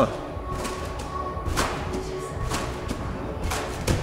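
Trampoline bed thudding with each bounce, about once a second, the last thud near the end the loudest, over background music.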